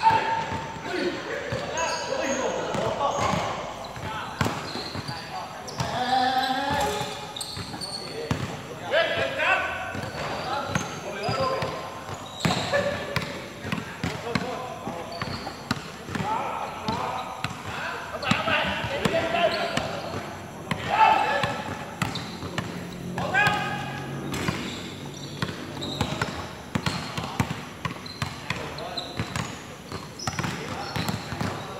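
A basketball bouncing and being dribbled on a hard court, short thuds scattered throughout, with players' voices calling and talking over it.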